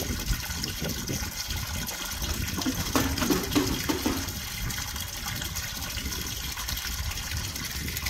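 A steady stream of water pouring and splashing into a half-full stock tank. A few short knocks come about three to four seconds in.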